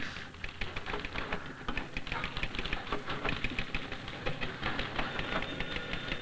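Typewriter keys clattering in a rapid, continuous stream of keystrokes.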